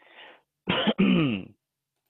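A man clearing his throat: two short pushes about a second in, the second falling in pitch.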